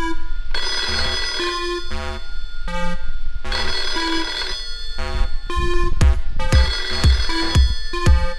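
A telephone ringing in three bursts of a second or so each, with short pauses between, over music with a steady beat.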